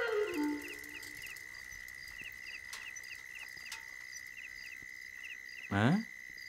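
Night-time cricket ambience: a steady high insect drone with short chirps repeating in small groups, after a music cue dies away at the start. A brief rising vocal sound comes near the end.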